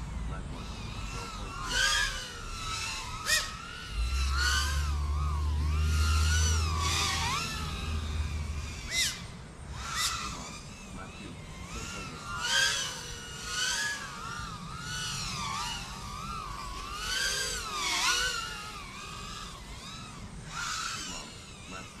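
FPV racing quadcopter's motors and propellers whining as it flies the gate course, the pitch sweeping up and down with each throttle change and turn, in repeated swells. A low steady hum sits underneath from about four to eight seconds in.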